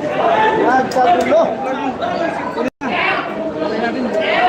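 Crowd chatter in a large hall: many voices talking and calling out over one another during a commotion. The sound cuts out completely for an instant a little past halfway.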